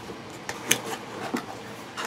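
Quiet handling of a subscription box and its packaging, with a few small clicks.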